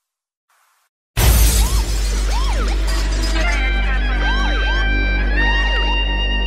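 About a second of silence between tracks, then a new Arabic house remix track starts abruptly with a loud crash over a deep, steady bass. Repeated swooping pitch glides follow, and held high tones come in about halfway through.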